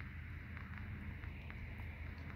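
Quiet, steady low background hum, with faint handling of the small plastic parts of a toy figurine being pressed together.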